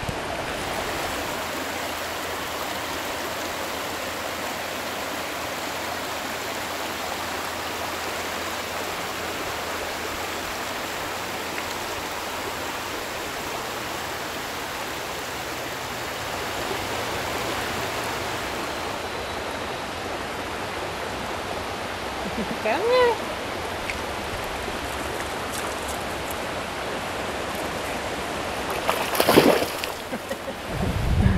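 Shallow creek running steadily over a gravel and stone bed, a continuous rushing of water. A short rising-and-falling call is heard about two-thirds of the way through, and a brief loud noise comes just before the end.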